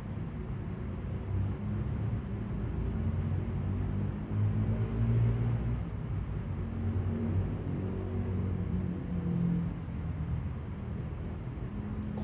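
Low, steady background rumble with a faint hum that swells and fades; no speech.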